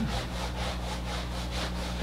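Whiteboard eraser rubbed back and forth across the board in quick repeated strokes, a rhythmic scrubbing.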